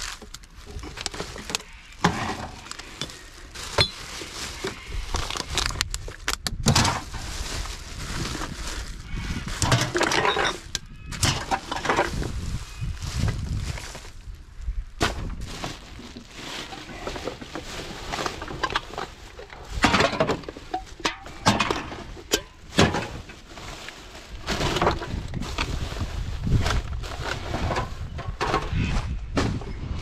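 Plastic garbage bags rustling and crinkling as they are pulled about, with irregular clinks and knocks of glass bottles and aluminium cans against each other.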